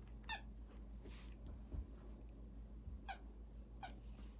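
Squeaker in a plush dog chew toy giving a few short, faint, high squeaks as a terrier bites and wrestles it: one just after the start and two near the end.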